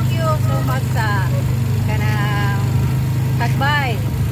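Motorcycle engine of a tricycle (motorcycle with sidecar) running steadily while under way, a constant low drone, with a woman's voice talking over it.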